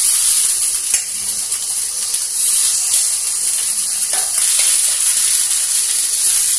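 Semolina batter sizzling as it is spooned into a hot, oiled appe pan with spluttering mustard seeds, a steady frying hiss. A few light clicks of a metal spoon against the pan.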